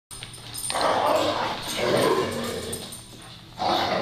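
Dogs vocalizing in rough play, in three loud bursts of barking and growling, the last starting near the end.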